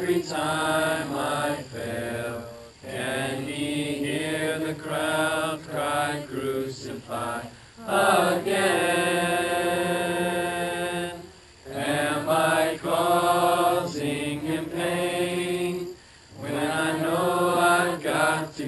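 A congregation singing a hymn together, in phrases broken by short breaths, with one long held note from about eight to eleven seconds in.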